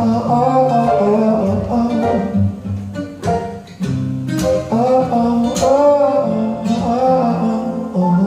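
Live band music: a male singer over strummed acoustic guitar, with upright piano, electric bass and djembe.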